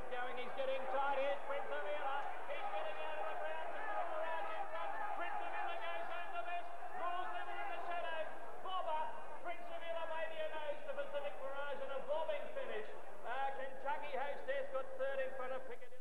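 A man's fast, unbroken horse-race commentary, calling the field through the finish of the race.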